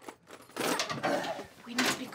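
Rattling, clattering work noise from hands and tools at a domestic washing machine, starting about half a second in and ending in a sharper burst near the end.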